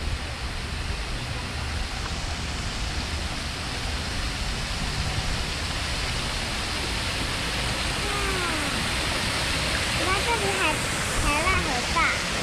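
Spring water rushing into the canal at its inlet, a steady rush that grows louder toward the end.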